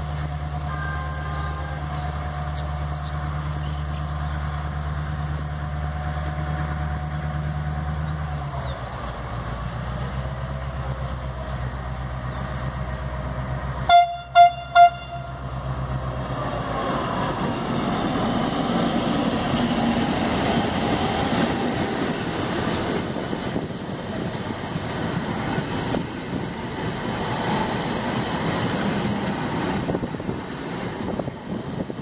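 Diesel passenger locomotive approaching with a steady low engine drone, then sounding its horn in three short blasts about 14 seconds in. From about 16 seconds the locomotive and its coaches pass close by with rising engine and wheel-on-rail noise.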